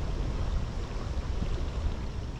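Steady rush of a shallow creek running over rocks, under a low rumble of wind on the microphone.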